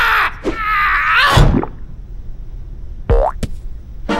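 Cartoon sound effects: a cartoon character's wavering yell that ends in a heavy thud about a second and a half in, then a short rising boing about three seconds in.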